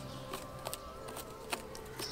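An insect buzzing close by, its pitch wavering slightly, with a few sharp small clicks over it.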